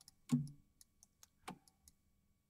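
A handful of short, sharp computer mouse clicks, unevenly spaced, from a user working in 3D software.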